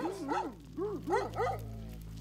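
Caucasian shepherd dogs barking: about five short barks in the first second and a half, over a steady low hum.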